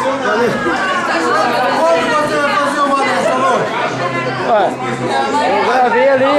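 Several people talking over one another: overlapping conversational chatter.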